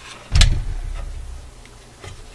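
A heavy thud about half a second in as the metal chassis of a vintage console stereo receiver is tipped over and set down on the workbench, followed by a low rumble that fades over about a second and a light knock or two as it settles.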